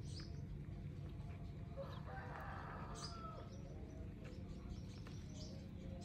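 Faint, short high chirps of birds, a handful of times, over a steady low hum.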